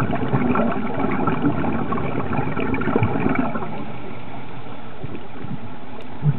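Underwater noise picked up through a dive camera's housing: a steady crackle with a low, gurgling rumble, busier in the first half and easing a little later on.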